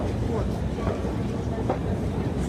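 Metro escalator running: a steady low mechanical rumble with a few faint clicks from the moving steps.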